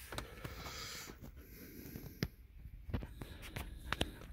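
Faint panting and sniffing of a dog, with a few light, irregular clicks.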